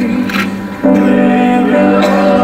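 Vocal duet sung with instrumental accompaniment: long held notes, with a short break between phrases just under a second in before the singing resumes.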